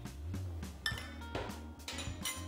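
Background music, with a few light clinks of a metal spoon against a steel measuring cup, about a second and a half apart.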